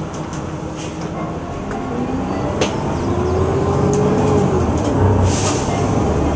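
Car engine heard from inside the cabin, getting louder as the car accelerates; its note climbs and then drops back about four and a half seconds in.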